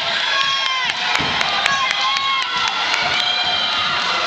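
Wrestling spectators shouting and cheering, many raised voices overlapping, while a wrestler is held on his back, with a few sharp clicks about a second in.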